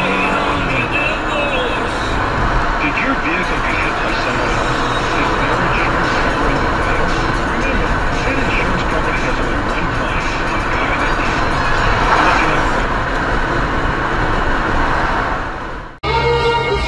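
Steady road and engine noise heard inside a moving car, with indistinct voices mixed in. It fades out near the end.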